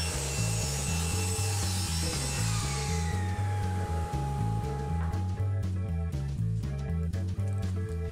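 Table saw running just after a stave cut on a sled, its high noise fading over the first three seconds and a steady whine cutting off about five seconds in. Light clicks of handling the wood and clamp follow, over background music with a steady bass line.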